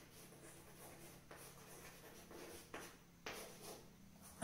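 Chalk writing on a chalkboard: faint scratching strokes with a few sharper taps, the loudest about three seconds in.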